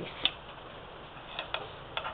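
Four faint, sharp clicks at uneven intervals over a low hiss as fabric is folded and shifted by hand on the sewing machine bed. There is no running-machine rhythm.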